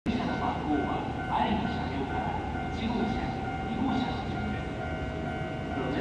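Station public-address announcement over the loudspeakers, with a steady high electronic tone running under it and a low rumble of background noise.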